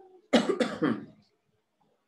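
A man coughing: three short coughs in quick succession within the first second.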